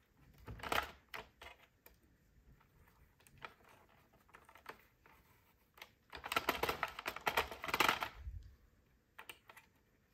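Light plastic clicks and ticks as stitches are pulled off the pegs of a plastic circular knitting machine with a needle and yarn, scattered at first, then a denser run of clicking about six seconds in that lasts a couple of seconds.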